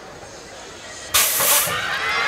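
BMX start gate dropping: a sudden loud burst of hissing noise about a second in as the gate releases, lasting about half a second. Shouting and cheering start right after it.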